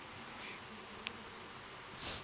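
Faint room tone with a steady hiss in a pause between speech, with one small click about a second in.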